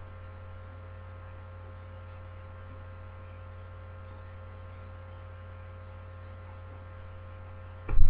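Steady electrical mains hum with a faint higher whine above it, picked up by the recording. A single loud thump comes right at the end.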